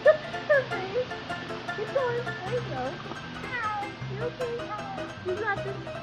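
Domestic cat meowing repeatedly while held in water, short calls that rise and fall in pitch, with music playing underneath.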